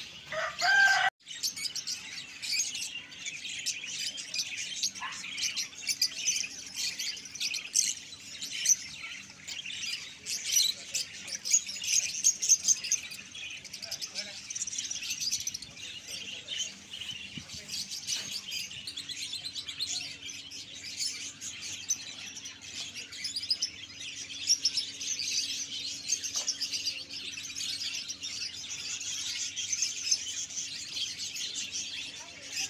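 A crowd of caged budgerigars and lovebirds chirping together in a dense, continuous chatter, with a steady low hum underneath.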